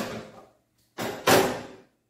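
An aluminium pressure cooker being set down and shifted on a gas stove's metal pan support: two short clanks about a second apart, each dying away quickly.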